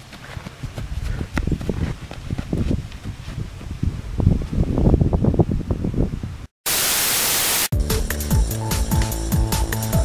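Uneven low rumbling of wind buffeting the microphone for about six seconds. Then a short dropout and a loud burst of white-noise static lasting about a second, followed by music with a steady beat.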